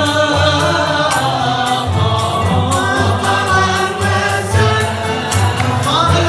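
Moroccan Andalusian (al-Āla) orchestra performing, with many voices singing the melody together over bowed violins and cello.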